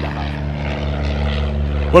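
A steady low engine drone holding several unchanging tones, with no speech over it until a voice comes in right at the end.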